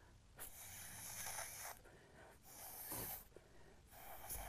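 Faint puffs of breath blown through a straw to push wet alcohol ink across a canvas: a long airy puff, then a shorter one a little past the middle.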